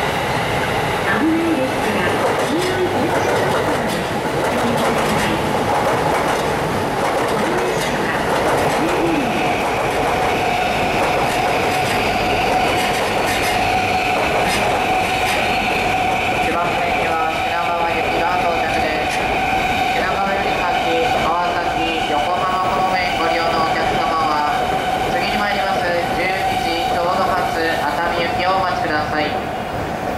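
Electric commuter trains running past on the station tracks: a steady rumble of wheels on rail, joined about ten seconds in by a steady whine that holds to the end.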